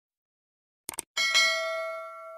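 A quick double mouse-click sound effect, then a bright notification-bell chime that rings out and slowly fades. These are the sound effects of a subscribe-button and bell animation.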